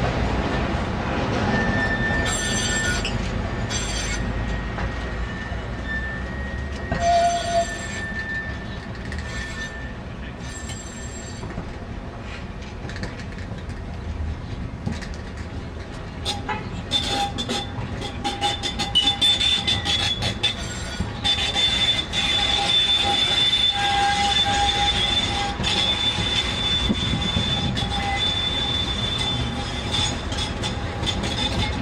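Tram wheels squealing on curved track as a Ganz articulated tram slowly hauls a new Siemens Combino NF12B tram, over a steady rolling rumble. A thin squeal comes and goes during the first ten seconds with a few sharp clicks, then from about halfway a higher, steady squeal sets in as the Combino passes.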